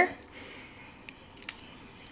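Quiet room with faint, soft handling sounds of fingers pressing cucumber strips onto nori on a bamboo rolling mat, with a couple of light ticks about a second in.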